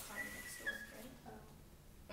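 Chalk squeaking on a chalkboard while writing: a thin, high squeal held for about half a second, ending with a short step down in pitch.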